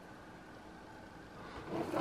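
Quiet room tone with a faint steady hum, and a soft noise swelling up near the end.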